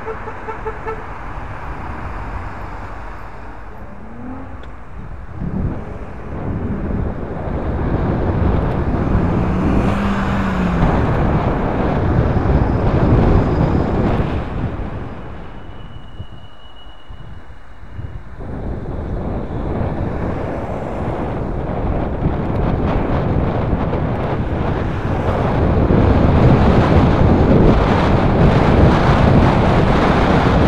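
Rushing wind noise on a moving onboard camera's microphone, mixed with passing road traffic. It dips for a couple of seconds about halfway through and grows louder near the end.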